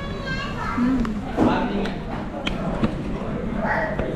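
Indistinct chatter of other people in a restaurant dining room, including children's voices, with a few sharp clicks.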